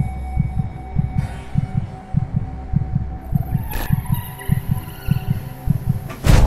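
Film-score sound design: a low, heartbeat-like throbbing pulse, a few beats a second, under held tones. A high sweep comes in about three seconds in and a brief sharp accent follows shortly after.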